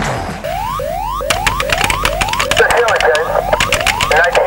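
An electronic sound effect: a short rising whoop repeated about two and a half times a second. A fast run of sharp clicks joins it about a second in, and a warbling, wavering tone comes in over the last second and a half.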